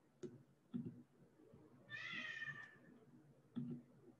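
A faint, short, high-pitched cry about two seconds in, slightly falling in pitch, among a few soft clicks.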